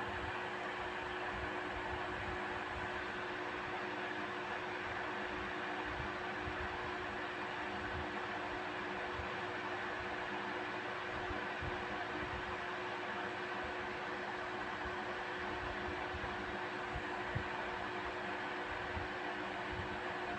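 Steady background hum and hiss, even throughout, with one faint tick late on.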